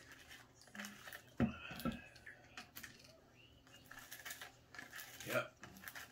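Tabletop handling sounds: a sharp knock about one and a half seconds in, then scattered light clicks and the crinkle of a plastic snack packet as seaweed snacks are picked out of it.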